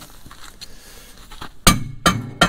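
A single sharp metallic crack near the end, with a brief ringing tail: a seized precombustion chamber in a Caterpillar D2 diesel cylinder head popping loose in its threads under a socket and cheater bar.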